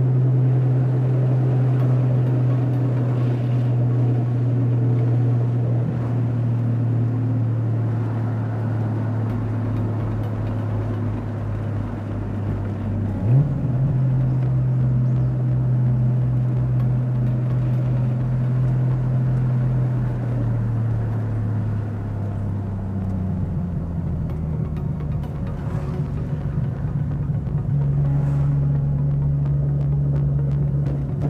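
A Nissan Skyline GT-R (R33)'s RB26 twin-turbo straight-six droning steadily under way, heard from inside the cabin, with wind noise on the microphone. A brief sharp blip comes about thirteen seconds in. The engine note drops a little past the middle and rises again near the end.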